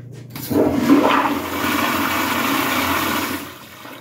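Zurn manual flushometer valve flushing a toilet: a click from the handle, then a loud rush of water into the bowl that holds for about three seconds and tapers off near the end.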